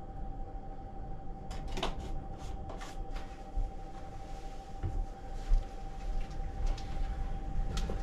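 Scattered light knocks and clacks of someone handling plastic things: the soap bottle is set down and a plastic water jug is picked up. A steady faint hum runs underneath.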